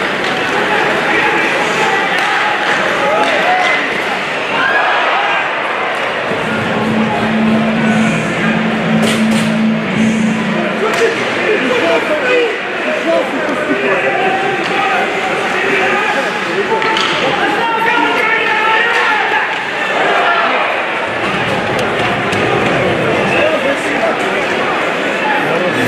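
Ice hockey arena game sound: a hall full of crowd voices, with sharp clicks and knocks from sticks, puck and boards. A steady low tone sounds for a few seconds in the first half.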